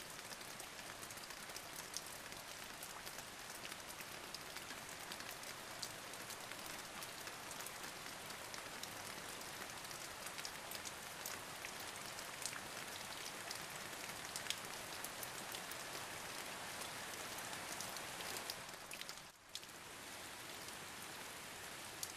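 Steady rain falling, a constant hiss with many individual drops ticking close by. It dips out for a moment near the end and comes straight back.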